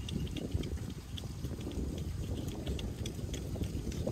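Wind buffeting the microphone outdoors: an uneven low rumble, with faint scattered ticks.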